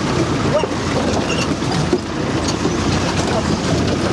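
A 4x4 driving along a rough, muddy dirt track, heard from inside the cab: steady engine and road noise as the vehicle jolts over the ruts.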